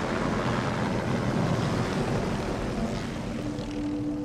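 A light helicopter running steadily close by, its rotor downwash raising dust: a fast rotor beat under a steady rushing noise.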